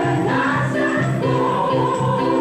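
Women's gospel choir singing together over instrumental accompaniment with a steady, repeating bass line.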